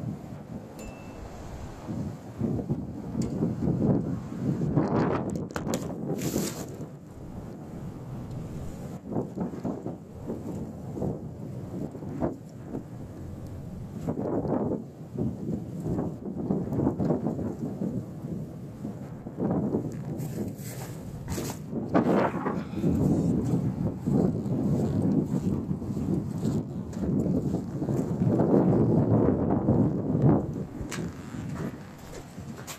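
Strong gusty wind buffeting the microphone, a rumbling noise that swells and eases in gusts. A few sharp knocks and rattles break through, about five seconds in and again just past twenty seconds.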